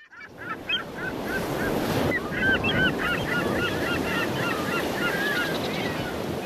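A flock of gulls calling over a steady wash of surf, the calls sparse at first and crowding together from about two seconds in.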